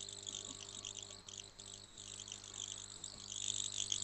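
Faint, rapid high-pitched chirring over a low steady hum: background noise on an open microphone in a video call.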